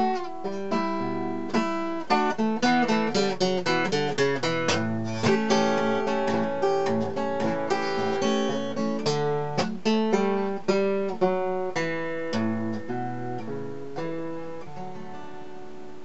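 Acoustic guitar playing a blues instrumental passage, a quick run of plucked notes. The notes thin out towards the end and a final chord is left ringing to close the song.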